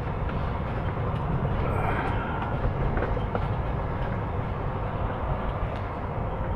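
Steady low rumble of a semi-truck's diesel engine and rolling noise, heard from inside the cab while it drives slowly across the yard, with a faint click about three seconds in.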